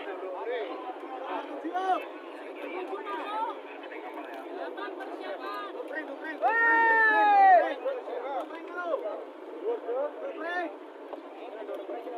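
Crowd of men talking and calling out over each other, with one loud, drawn-out shout falling in pitch about six and a half seconds in: handlers calling to racing pigeons as they come in.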